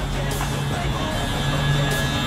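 Background music over the steady hum of an Alber SMOOV power-assist drive pushing a manual wheelchair, its wheels rolling over parking-lot pavement.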